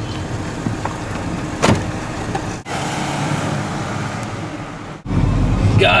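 Car door opening and then shut with a sharp slam about a second and a half in, over steady outdoor traffic noise. From about five seconds in, a louder low engine and road rumble inside the moving car.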